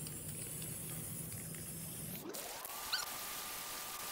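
Aerosol spray paint can hissing as gloss black is sprayed over the board. A little past halfway a thin tone rises in pitch and then holds steady, with a brief squeak about three seconds in.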